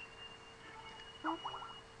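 Low steady electrical hum with a thin high whine over a video-call line, and a brief faint voice-like murmur a little past the middle.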